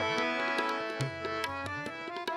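Harmoniums playing held, reedy chords with tabla accompaniment, the tabla's bass drum giving low strokes that bend in pitch between sharper treble-drum strokes.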